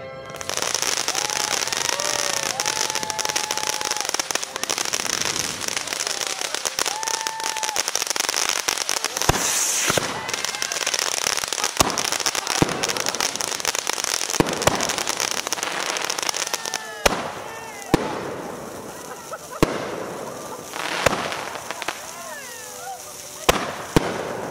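Consumer fireworks going off: a loud, steady hissing crackle of sparks from about half a second in, with sharp bangs scattered through it. From about 17 seconds in, a run of separate loud bangs comes about a second or so apart as shells burst overhead.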